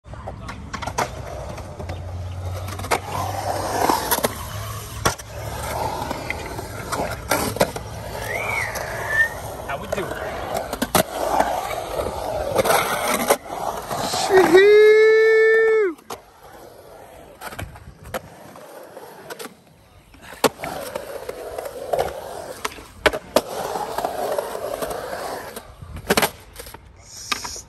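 Skateboard urethane wheels rolling and grinding over a concrete bowl, with repeated sharp clacks and knocks from the board, trucks and tail hitting the concrete and coping. A little past the middle, a person lets out one loud, long held shout.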